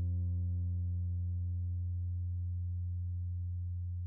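Cort Little CJ acoustic guitar's last low notes ringing out after the final stroke, slowly fading.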